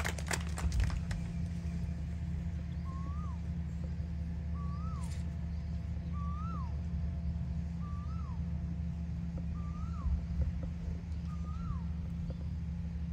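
A bird repeating one short whistled call, a note that rises and then drops, six times at an even pace of roughly one every second and a half to two seconds, over a steady low rumble. The last few claps of applause fade out in the first second.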